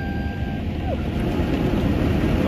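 Automatic car wash running over the car, heard from inside the cabin: a steady rush of water spray and machinery that grows slowly louder. A held sung 'ah' note sits over it and falls away about a second in.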